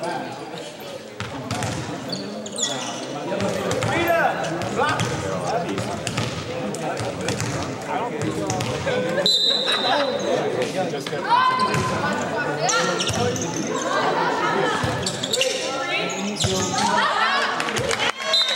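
Volleyball match in a school gym, echoing: many overlapping voices of players and spectators calling out, with thumps of the ball being bounced and struck. A short referee's whistle blast about halfway through signals the serve.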